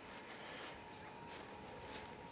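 Quiet outdoor ambience: faint, even background noise with a faint steady thin tone, and no distinct events.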